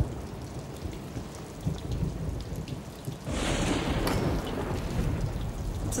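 Steady rain with a low rumble of thunder; about three seconds in the rumble and rain swell louder and stay up.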